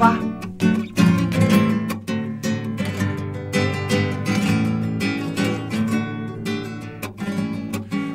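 Acoustic guitar played solo: a few strong strummed chords in the first two seconds, then softer picked notes.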